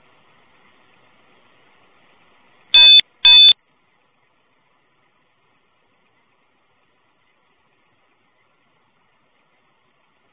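Two short, loud electronic beeps from an Axon Flex body camera, about half a second apart and roughly three seconds in, over a faint hiss.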